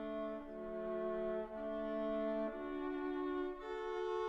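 Orchestral opera accompaniment: bowed strings hold slow, sustained chords that change about once a second, with no singing.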